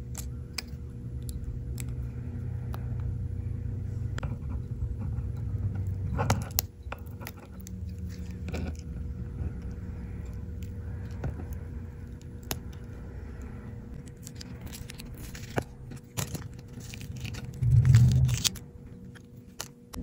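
Small clicks and scrapes of a metal pry tool and fingers working on an iPhone's internal parts, scattered irregularly over a steady low hum. A brief, louder low rumble comes near the end.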